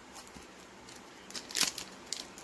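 Foil Pokémon booster-pack wrapper crinkling in the hands as it is gripped at the top to be torn open: a few short, crackly rustles, loudest about one and a half seconds in, after a quiet start.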